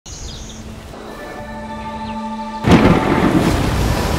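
Soft music of held notes, then about two and a half seconds in a sudden loud rush of churning water breaks in and keeps on.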